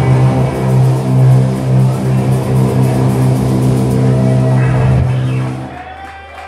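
Live stoner-metal power trio of electric guitar, bass and drums holding a low chord that rings on steadily, then drops away sharply just before the end.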